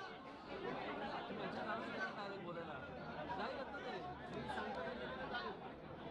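Low chatter of several people talking at once, a background murmur of voices with no single speaker standing out.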